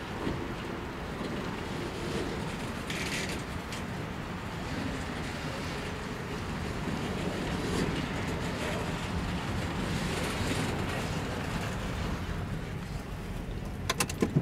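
Freight boxcars being shoved slowly in reverse, their steel wheels giving a steady low rumble along the rails, with a few brief sharper clicks.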